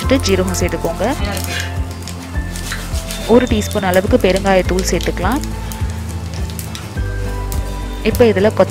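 Background music with a singing voice, over the sizzle of mustard and cumin seeds frying in hot oil for a tempering.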